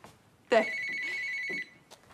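A cordless phone ringing: one electronic ring about a second long, a steady high tone with a fast flutter, starting about half a second in.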